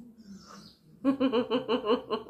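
A woman giggling: a quick string of short, pitched pulses, about seven a second, that starts about halfway through.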